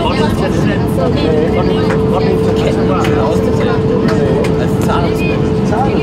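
Airbus A319 passenger cabin on the approach to landing: steady engine and airflow noise, with a steady whine coming in about a second and a half in, and faint passenger chatter.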